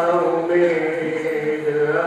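A man's voice chanting lines of a poem in long, held melodic notes that glide slowly in pitch.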